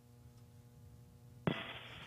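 Faint steady electrical hum on a launch-commentary audio feed. About one and a half seconds in, a sharp click as the voice channel opens, followed by a thin radio-like hiss.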